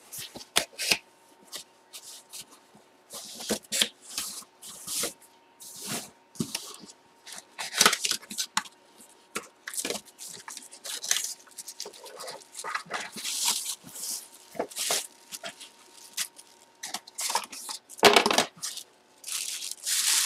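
Hands opening a small cardboard box and unwrapping a baseball from its wrapping: irregular rustling and crinkling, with a louder rustle near the end.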